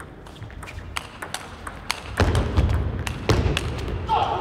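Table tennis rally: the ball clicks off bats and table in quick succession, about three or four hits a second. From about halfway through, heavier low thuds come in under the clicks.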